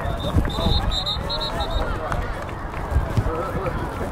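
Sideline spectators talking and calling out over one another at a youth football game, with a low wind rumble on the microphone. A brief high, thin tone sounds about half a second in.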